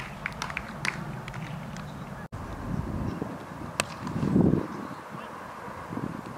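Open-air ambience at a cricket ground: faint distant voices of players, a sharp click a little under four seconds in, and a short low shout just after it.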